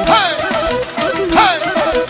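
Loud live band dance music in a Balkan folk style. A lead instrument plays a melody that swoops sharply down in pitch twice, once at the start and once about a second and a half in, over a steady drum beat.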